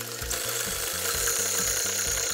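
KitchenAid Artisan stand mixer running, its wire whisk beating egg whites for meringue in a metal bowl. A thin high whine joins it a little after a second in.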